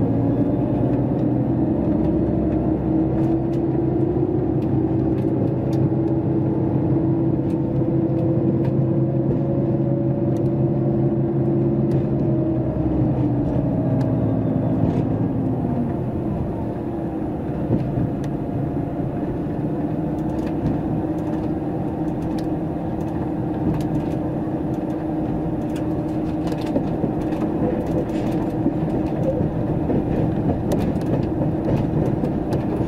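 Inside a KiHa 281 series diesel express train on the move: a steady engine drone with several tones that rise slowly in pitch as the train gathers speed, then drop lower about halfway through, over rumbling running noise and light clicks from the rails.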